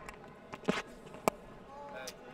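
Quiet cricket-ground ambience as a delivery is bowled, with two short, sharp clicks a little over half a second apart.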